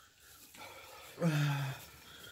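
A man's voice: one short, held vocal sound, about half a second long, starting about a second and a quarter in, with steady, slightly falling pitch. The rest is quiet room.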